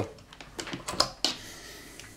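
A few light plastic clicks and taps from a hand blender being handled with its motor off, clustered around the first second.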